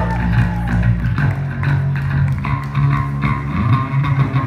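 Live rock band playing an instrumental passage: electric guitars, electric bass and drum kit, with steady bass notes under regular drum hits.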